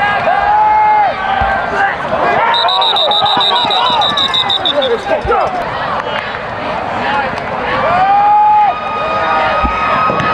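Football stadium crowd, many voices shouting and calling out over one another, with a few long held shouts. A high trilling whistle, a referee's whistle, sounds for about two seconds starting about two and a half seconds in.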